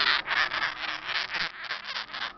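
Hands rustling and rubbing through fleece cage bedding while lifting out a sugar glider: a quick run of scratchy rubbing sounds that thins out about three quarters of the way through.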